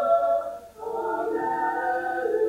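A stage chorus of high school singers sustaining a held chord together. The singing breaks off briefly a bit over half a second in and then comes back.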